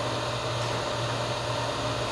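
Steady background hum and hiss in a small room, with a constant low hum, as from a fan or other running appliance.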